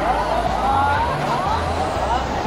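Steady din of a large indoor crowd with short, high squeaks of court shoes on the badminton mat during a doubles rally, several of them about a second in.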